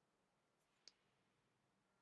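Near silence, with one faint short click a little under a second in.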